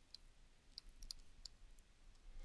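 Near silence broken by a few faint, short clicks of a stylus tip tapping on a tablet screen while handwriting.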